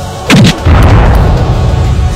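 A loud cinematic boom-hit, the kind added as a sound effect to an action trailer, about a third of a second in, dropping in pitch as it fades. A deep steady rumble follows it.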